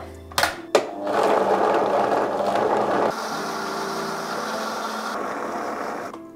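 Vitamix blender running at speed, puréeing a thick green curry paste of chillies, herbs, ginger and garlic with a splash of water. Two short clicks come first, the steady running begins about a second in, and the sound shifts about three seconds in as the paste works through the jar.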